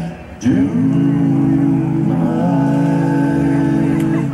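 Bluegrass vocal harmony: after a short breath, several voices scoop up into one chord and hold it for about three and a half seconds before it fades near the end.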